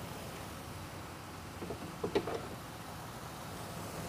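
A few light clicks and knocks from the coolant machine's green service hose coupling being unplugged, about two seconds in, over a low steady shop background.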